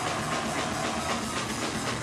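Punk rock band playing live: electric guitar and drum kit together in a dense, steady wall of sound, with drum hits punctuating it.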